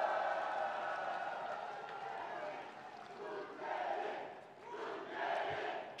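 Large arena crowd of supporters cheering and shouting. The noise is loudest at first, fades over a few seconds, then swells briefly twice more.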